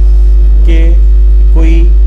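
Loud, steady low electrical mains hum running through the recording, with a man's voice breaking through briefly twice.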